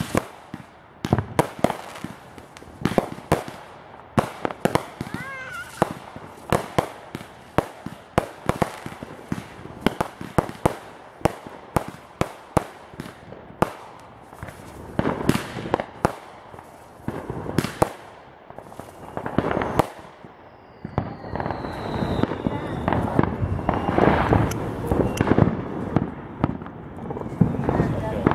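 Aerial fireworks being launched and bursting overhead: many sharp bangs and pops at irregular intervals, with crackling and a couple of short whistles, thickening into a denser barrage in the last few seconds.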